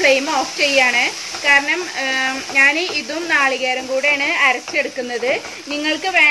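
A woman speaking, with a faint sizzle of onion-tomato masala frying in the pan underneath.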